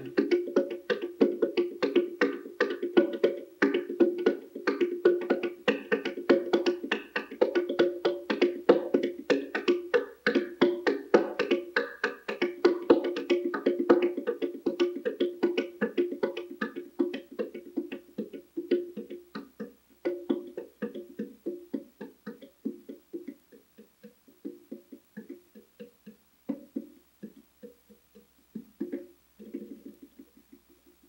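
Bare fingers drumming a fast, steady rhythm on a wooden box drum, each tap a hollow pitched knock. About two-thirds of the way through the playing turns softer and sparser, and the rhythm changes.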